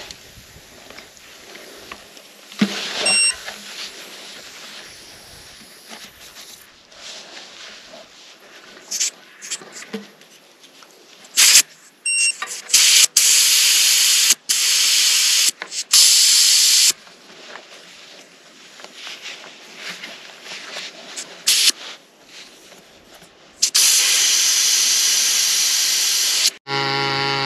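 Air hissing in repeated bursts from a punctured tubeless mountain-bike tyre during a roadside flat repair, a few short spurts then longer hisses lasting a second or more, the longest near the end.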